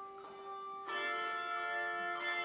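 Handbell choir ringing a chord of several bells that rings on, with a new chord struck together about a second in.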